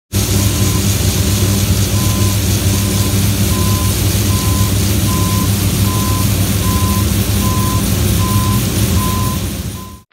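Grain-unloading machinery running loudly and steadily, a low engine drone under the rush of grain pouring from an auger spout into a trailer. A high electronic warning beep repeats a little faster than once a second, and everything cuts off suddenly at the end.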